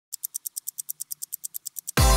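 Rapid, evenly spaced high-pitched ticking, about nine ticks a second: a clock-tick sound effect that leads straight into the intro music.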